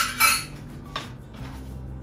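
Sliced onion being scooped off a plastic cutting board into a stainless steel measuring cup: two quick scraping clatters right at the start and a smaller one about a second in.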